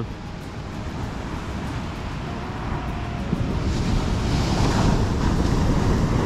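Heavy Pacific surf breaking on a sandy beach. The rush of the waves swells about three and a half seconds in to a louder crash that holds toward the end.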